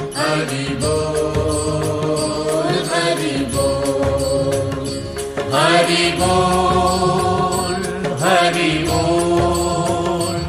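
Devotional chanting set to music: a voice holding long, wavering notes over a steady low beat.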